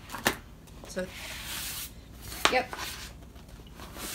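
Stiff rustling and a short knock as a diamond painting canvas is handled and turned over.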